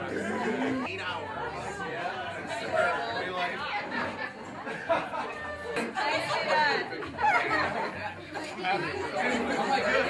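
Overlapping chatter of a small group of people greeting one another, with excited voices rising around six to seven seconds in.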